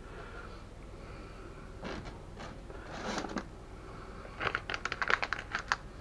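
Light scratchy rustling from hands handling seasoning over baking paper, then a quick run of sharp crinkling crackles about four and a half seconds in, lasting just over a second.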